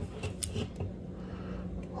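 Quiet room tone with a few faint, light clicks of handling.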